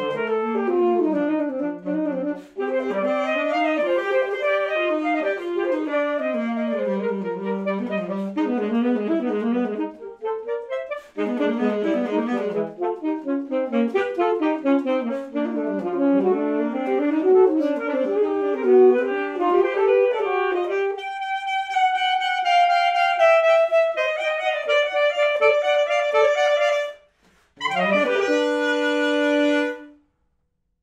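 Two alto saxophones playing a duet: fast interweaving runs, a short break about ten seconds in, then held notes with a slow downward slide, a brief pause, and a final held chord that closes the piece.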